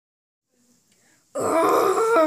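Near silence, then about a second and a half in a loud, drawn-out wordless groan in a puppeteer's voice, a waking-up stretch for a plush toy character.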